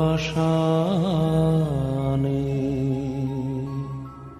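The closing of a Bengali film song: a male singer holds a long final note over the accompaniment. The note wavers about a second in, then steps down to a lower held note that fades away.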